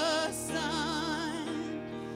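Worship song: a woman's voice sings held notes with a wide vibrato over sustained chords on a Yamaha S90 ES keyboard.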